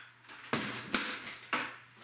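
A plastic food-grade bucket lid being handled: three short knocks about half a second to a second apart.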